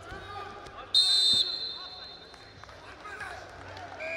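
A referee's whistle blown once about a second in: one short, high, steady blast of about half a second that stops the wrestling bout. Voices shout throughout.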